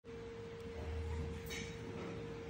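Steady background hum: a constant mid-pitched tone over a low rumble that swells slightly about a second in, with a brief faint hiss about one and a half seconds in.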